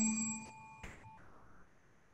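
A countdown timer's music ending: a last held note made of several steady tones fades away over about a second, with a single click just before it dies out.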